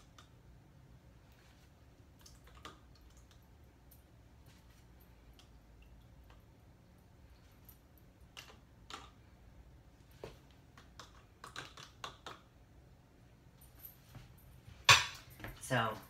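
A stirring utensil tapping and clinking against clear plastic cups as pH-indicator drops are mixed into water samples one cup after another: scattered light clicks, closer together in the second half, with one sharp knock about a second before the end.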